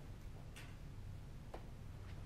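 Quiet classroom room tone: a steady low hum with two faint ticks about a second apart.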